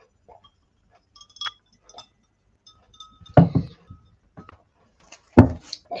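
A drinking glass clinking lightly several times as it is handled for a quick drink, followed about halfway through by a short vocal sound from the drinker.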